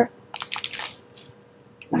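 Small plastic zip bags of diamond-painting drills crinkling as they are handled, a short cluster of crackles about half a second in.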